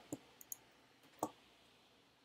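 A few faint clicks from operating the computer, as the code is set to run; the loudest comes a little over a second in.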